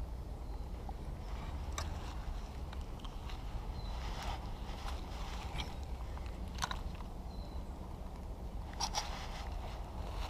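Close handling noise on a body-worn camera: soft rustling and about half a dozen scattered sharp clicks over a low steady rumble.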